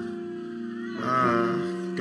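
Background church music of sustained keyboard chords held steady, with a wavering higher note rising in about a second in.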